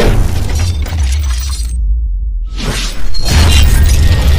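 Cinematic intro sound design over music: a steady heavy bass rumble under crashing, glassy hits and whooshes. The high end drops out for under a second in the middle, then a sweep leads into a loud hit about three seconds in.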